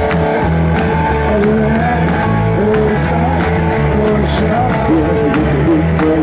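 Garage rock band playing live: bass and guitar steady underneath, with a melody line bending up and down in pitch over the top.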